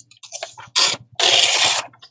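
A loose sheet of thin printed book paper rustling as it is picked up and handled: a couple of short rustles, then a longer one lasting about half a second.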